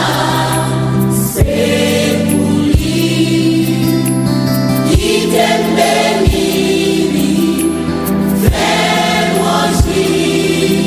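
Gospel music: a choir singing over sustained backing chords, with a sharp percussive beat every one to two seconds.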